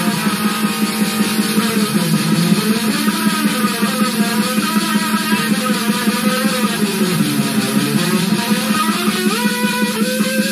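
Electric guitar with an 18-tone equal-tempered microtonal neck, played through a small Ibanez Tone Blaster amp, picking a distorted death/thrash metal riff over a 160 bpm black-metal drum loop with a steady fast pulse. Near the end a few notes slide up in pitch.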